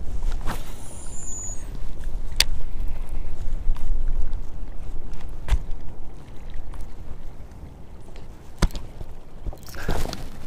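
Outdoor rumble of wind on the microphone with water lapping against a small boat's hull, and a few sharp ticks scattered through.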